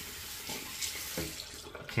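Tap water running into a sink as a shaving-soap tub is rinsed under it, to clear loose lather off the soap's surface. The water stops near the end.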